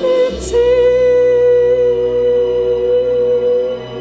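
A woman singing one long held note over a sustained instrumental accompaniment; the note changes about half a second in, is held with a slight waver, and ends shortly before the close.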